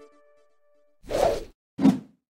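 Two whoosh sound effects accompanying an animated title-card transition: a half-second swell about a second in, then a shorter, sharper one near the end. The last held tones of electronic intro music fade out at the start.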